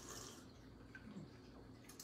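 Near silence: room tone, with a couple of very faint small sounds.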